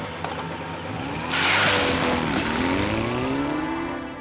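Motorcycle engine revving, its pitch dropping and then climbing again. A loud hissing burst cuts in about a second and a quarter in.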